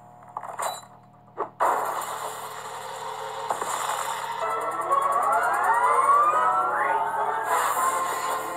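Cartoon sound effect of a machine powering up: two brief sounds, then from about a second and a half in a sudden loud electrical crackling with rising whines, mixed with a music score.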